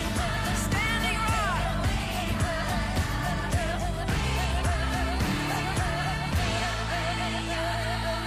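Theme music with a singing voice whose pitch wavers up and down throughout; from about six and a half seconds in, the low part of the music settles into steady held notes.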